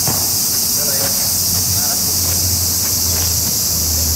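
Steady, high-pitched chorus of insects singing.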